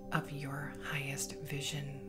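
Soft whispered voice over steady ambient meditation music drones.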